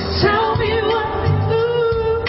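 Pop song: a woman singing over a backing band with bass and drums. About half a second in she settles on a long, wavering held note.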